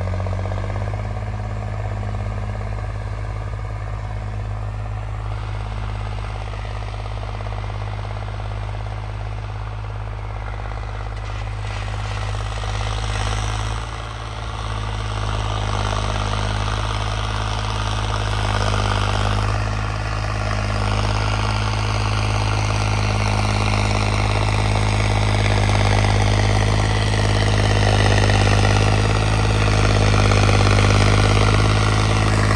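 Modified John Deere tractor's diesel engine running steadily under load as it pulls a cultivator through ploughed soil, getting louder over the second half as it comes closer.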